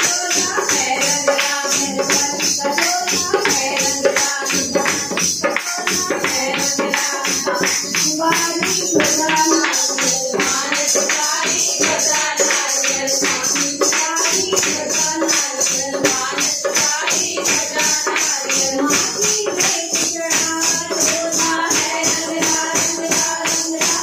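Women singing a Hindu devotional bhajan in kirtan style, with a hand-played dholak drum keeping a fast rhythm and continuous jingling percussion over it.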